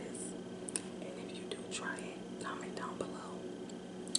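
A woman whispering close to the microphone, over a faint steady low hum.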